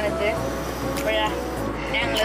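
People talking over background music, with the low steady rumble of a car's cabin underneath.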